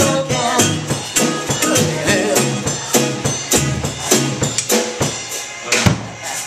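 Live rock band playing: a drum kit keeps a steady beat of about two strokes a second under a male singer and guitar, with a hard drum hit near the end.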